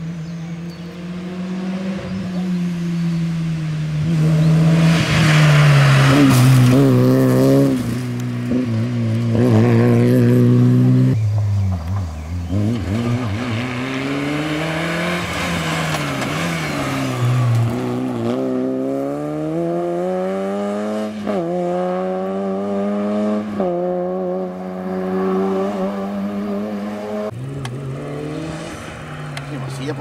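Peugeot 106 rally car's engine revving hard on a stage, its pitch climbing and dropping repeatedly as it shifts gears and lifts for corners. It is loudest between about four and eleven seconds in.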